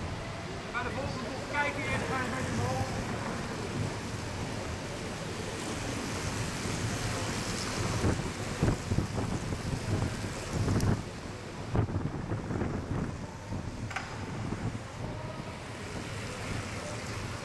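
A pack of track bikes rolling past on wooden velodrome boards: a steady rush of tyres and air that swells as the riders pass close by, about halfway through, and again near the end. Faint voices early on.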